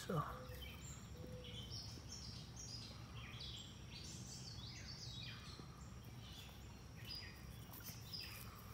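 Songbirds singing: a steady stream of short, high chirps and trills, over a constant low background rumble.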